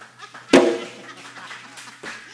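The closing chord of a live acoustic song: one loud strum on the guitar about half a second in, ringing and fading away.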